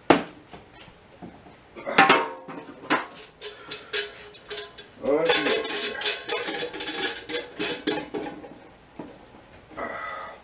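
Sharp metallic clinks and knocks from handling the stainless-steel pot still and its fittings, a series of separate strikes with the loudest about two seconds in. A few seconds of low, wordless voice sound come in the middle.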